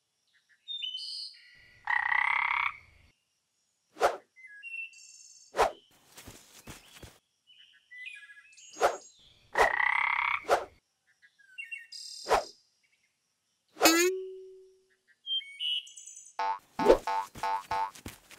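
Cartoon sound effects for a toy frog: two frog croaks with short clicks and chirpy blips between them, and a quick falling whistle-like glide later on. A bouncy rhythmic music cue starts near the end.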